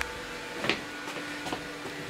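A faint steady hum, with a sharp click about two-thirds of a second in and a few lighter ticks and rustles of objects being handled.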